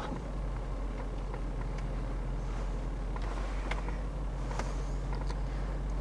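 BMW X5 4.6is V8 engine running at low revs as the car reverses slowly, heard from inside the cabin: a steady low hum with a few faint ticks.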